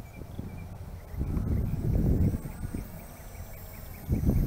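Wind buffeting the microphone in gusts, louder in the middle.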